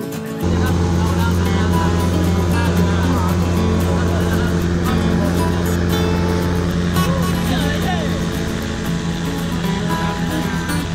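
Long-tail boat engine running steadily under way, cutting in abruptly about half a second in, with guitar music and voices underneath.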